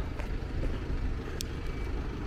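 Steady low rumble of a waiting lorry's engine idling, with one short click about one and a half seconds in.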